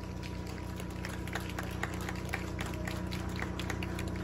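Scattered hand claps and crowd noise in a lull between eisa drum numbers: irregular sharp claps, several a second, over a steady low hum.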